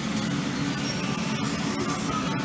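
Steady low hum of shop background noise, without clear events.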